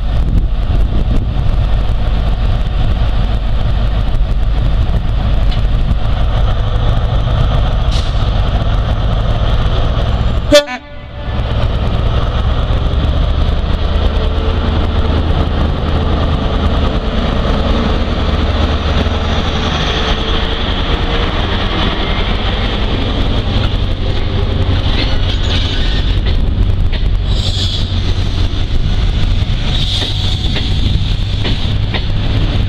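Class 43 HST power car's MTU diesel engine working as it pulls the train away past the platform: a loud, steady low rumble, with the coaches rolling by after it. A brief sharp crack about ten seconds in.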